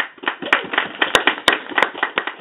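Audience applauding, breaking out suddenly with many overlapping claps and a few sharp ones louder than the rest.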